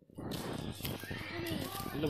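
Outdoor background with faint, indistinct voices murmuring about a second in.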